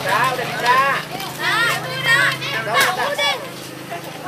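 Young children's voices chattering and calling out, high-pitched and overlapping, over a steady low hum.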